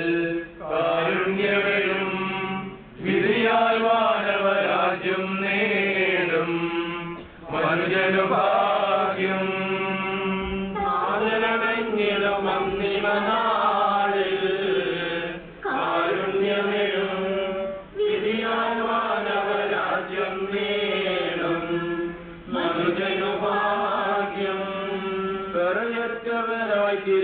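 A man's voice chanting a liturgical prayer into a microphone, in long melodic phrases with short pauses for breath every few seconds.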